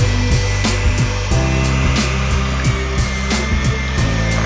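Electric hand mixer running, its beaters working through chunks of cooked pumpkin with eggs and milk, a steady whine under background music with a beat.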